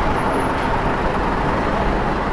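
Steady city street traffic noise: a continuous hum of road vehicles.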